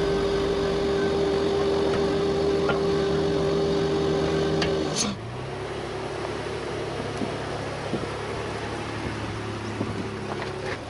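Off-road vehicle engine running steadily with a strong steady whine. About halfway through it changes abruptly to a quieter, lower steady engine hum.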